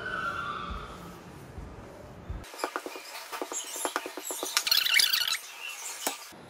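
A rolling pin works dough on a floured wooden board with a soft low rumble. After about two and a half seconds it gives way to a quick run of sharp clicks and light scratching, with a dense crackle for about a second near the end.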